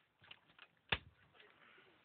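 A few light clicks, then one sharp knock about a second in.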